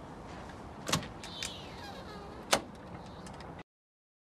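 A front door being worked: two sharp clicks about a second and a half apart over a low hiss, then the sound cuts out to silence near the end.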